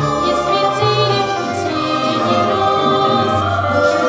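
Large choir of children's voices singing a waltz in full voice, over an orchestral accompaniment with held bass notes.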